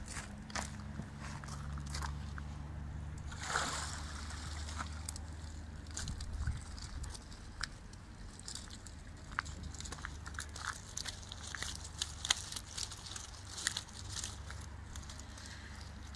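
Pond water sloshing and splashing as a mesh fishing keepnet full of trout is hauled up out of the water, in scattered small bursts with the loudest about three and a half seconds in.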